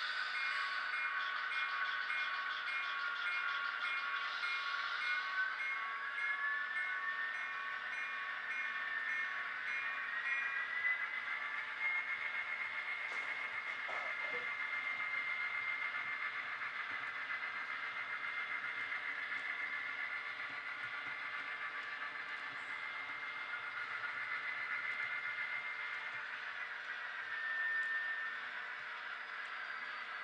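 Sound systems in HO-scale model diesel locomotives playing diesel engine sound through small speakers. The engine pitch climbs about 5 seconds in and again about 11 seconds in, then settles back down near the end. An evenly repeating tone sounds over the first ten seconds, and there are a couple of small clicks midway.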